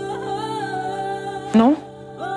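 Background music: a wavering melody line over sustained held notes, with a brief spoken "No?" rising in pitch about one and a half seconds in.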